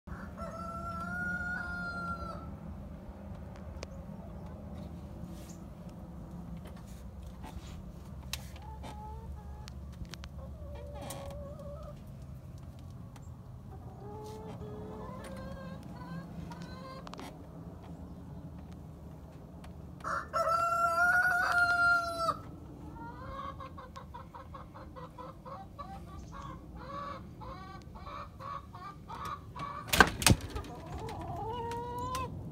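Rooster crowing twice, one long crow at the start and a louder one about twenty seconds in, with chickens clucking in between. A fast run of clucking fills the last several seconds.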